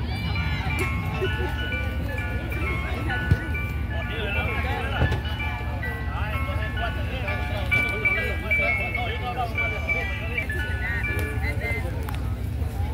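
Mister Softee ice cream truck playing its chime jingle through its loudspeaker, a bright repeating melody of clear stepped notes, over a steady low rumble.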